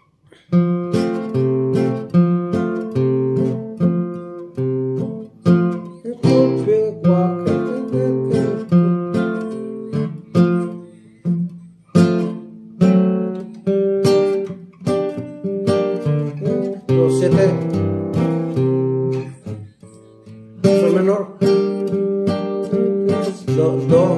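Nylon-string classical guitar playing a song in F major: plucked and strummed chords with melody notes, starting about half a second in, with a brief break near the end before the playing picks up again.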